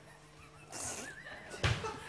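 A quiet studio pause holding a faint, brief, high wavering laugh-like voice about a second in, then a soft thump near the end.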